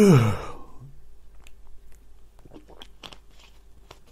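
A man's short voiced sigh sliding down in pitch, then a scatter of small wet clicks and smacks from his mouth close to the microphone.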